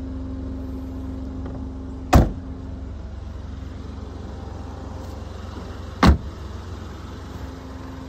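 Ford Fiesta 1.0 EcoBoost three-cylinder engine idling steadily, with two loud slams of the car's bodywork being shut, about two seconds in and again about six seconds in: the tailgate and a side door closing.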